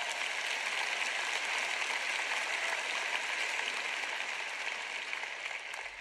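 Large audience applauding steadily, tailing off slightly near the end.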